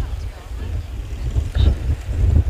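Wind buffeting the microphone, a gusty low rumble, with faint voices in the background.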